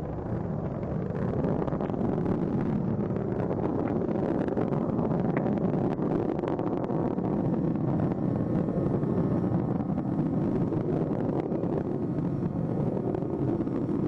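Steady rumbling roar of the space shuttle Atlantis's rocket engines and solid rocket boosters during ascent, about a minute after liftoff.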